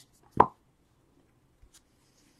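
A single hollow knock of an empty cardboard trading-card box being set down on the table, followed by faint rustles of cards being handled near the end.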